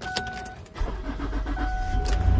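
Ford car's engine cranked by the starter with a few quick pulses and catching about a second in, then running at a low rumble, started cold to warm up. A steady electronic dashboard chime sounds briefly at the start and again near the end.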